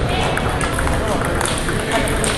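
Indistinct voices in a sports hall, with a few sharp clicks of table tennis balls off a neighbouring table.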